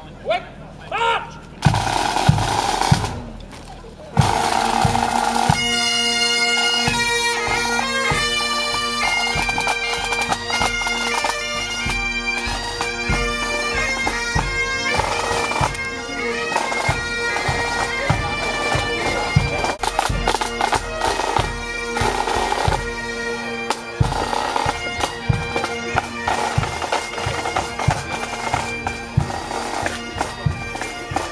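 A pipe band of Highland bagpipes and drums playing a tune. The pipes strike up about four seconds in, with steady drones under the chanter melody and regular drum beats.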